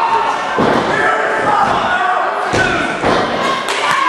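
A few heavy thuds and slams of wrestlers' bodies hitting the wrestling ring's canvas, over a gym crowd's chatter and shouting voices.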